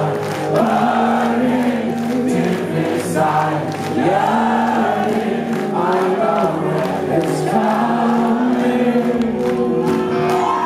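Live rock band playing, heard from the audience: electric guitars and bass under a sung melody.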